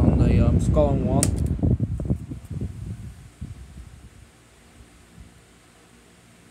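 A 16-inch Schallen plastic pedestal fan running, its airflow buffeting the microphone loudly at first. Over the first four seconds this fades away, leaving a faint steady hum from the fan.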